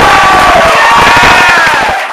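Audience cheering and clapping, with a few long shouts held above the crowd noise.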